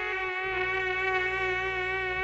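Instrumental music: a single reedy note held steady with many overtones, over a steady low accompaniment.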